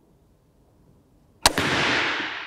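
A compound crossbow firing: quiet at first, then one sharp snap about one and a half seconds in, followed by a rushing noise that fades away over about a second.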